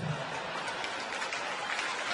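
Audience applauding and laughing.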